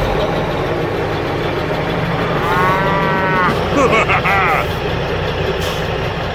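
A cow mooing about two and a half seconds in, followed about a second later by a shorter call that bends up and down, over a steady truck engine sound.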